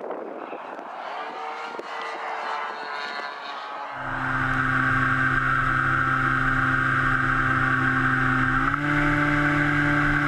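Model airplane in flight: a distant drone of the plane with wind noise for the first few seconds, then, from about four seconds in, the loud steady drone of its powerplant and propeller heard from an onboard camera. The drone steps up slightly in pitch near the end.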